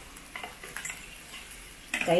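Wire balloon whisk stirring thick curd rice in a stainless steel bowl: faint, soft, wet mixing with a few light taps of the wires against the bowl.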